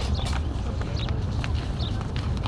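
Footsteps clicking irregularly on hard paving while walking, over a steady low rumble on the phone's microphone.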